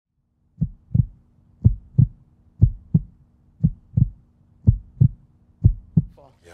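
Heartbeat sound effect: a low double thump, lub-dub, repeating about once a second, six times over, with a faint steady hum beneath.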